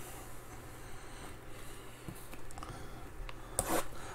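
Shrink-wrapped cardboard trading-card boxes being slid and handled on a tabletop: faint rubbing and scraping, with a few light taps near the end.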